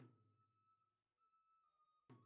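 Very faint fabiol, a small wooden flute, holding a high note that steps slightly up and back down about a second in.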